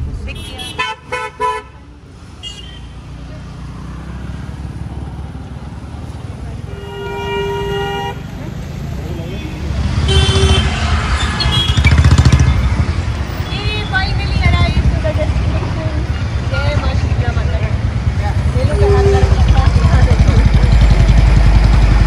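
Car and motorbike horns honking in slow, congested road traffic over a steady low rumble of engines: a few short toots near the start, one long horn blast about seven seconds in, and shorter toots later.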